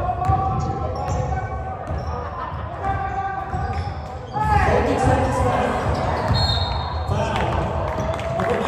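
Basketball game in a large gym: a ball bouncing on the hardwood floor and players' footfalls, with voices of players and spectators calling out across the hall.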